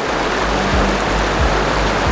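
Fast-flowing river rushing steadily, with background music under it carrying a low bass that pulses about every two-thirds of a second.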